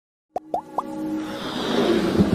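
Electronic intro jingle: after a moment of silence, three quick blips that slide upward in pitch, then a swelling riser that builds in loudness.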